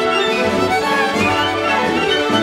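Solo violin played with an orchestra behind it, the strings holding sustained bowed notes.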